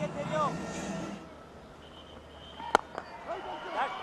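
Commentary trails off into quiet stadium background, then a single sharp crack of a cricket bat striking the ball about three-quarters of the way through, followed by the commentator's voice again.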